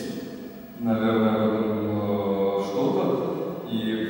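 A man's voice holding one long, steady filler vowel, a drawn-out "eee" while he searches for words. It starts about a second in and lasts nearly three seconds.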